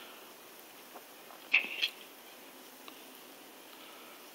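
Quiet handling of a bare hard drive, with one brief high squeak about one and a half seconds in.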